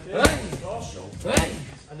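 Two hard strikes landing on leather Thai pads, a little over a second apart, each with a short shout.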